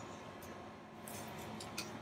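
Faint light clicks of metal parts as a disc-brake caliper is swung down on its slide toward the new pads, a few short ticks from about a second in.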